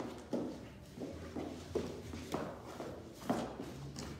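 Dance steps on a wooden floor: about five sharp, unevenly spaced taps of high heels and shoes as a couple moves together.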